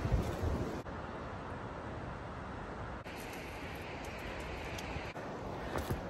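Wind buffeting the phone's microphone over the sound of sea surf breaking, a steady rushing noise with a low rumble.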